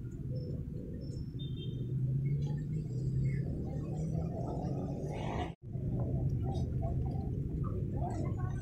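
Low, steady rumble of market ambience with faint indistinct voices, recorded on a phone while walking. It drops out abruptly about five and a half seconds in, then picks up again.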